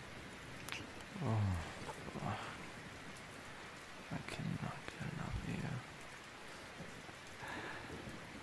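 Steady rain ambience, with a few short, low pitched grunts about a second in and again around four to six seconds.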